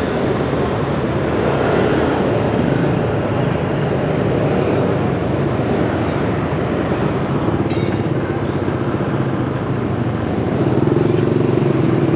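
Motorbike traffic heard from a moving scooter: a steady low engine hum with road and wind noise, and a brief cluster of clicks about eight seconds in.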